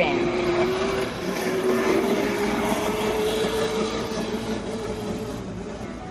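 A small motorbike engine running with one steady note that rises slightly in pitch about a second in, then eases off near the end.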